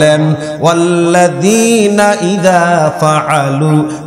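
A man's voice chanting in a melodic, sung style into a microphone, holding long notes that step up and down in pitch.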